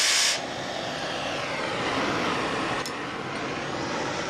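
Oxy-fuel gas torch flame burning with a steady rushing hiss as it heats a rusted nut to break it free. It opens with a brief, loud burst of high hissing gas.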